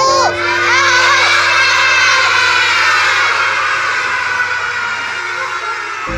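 A roomful of children laughing and shouting together, loud at first and slowly dying away.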